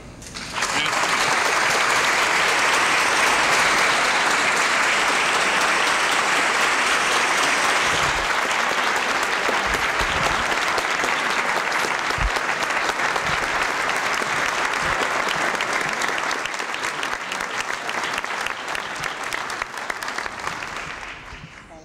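A large theatre audience applauding. The clapping starts within the first second, holds steady, and thins a little near the end.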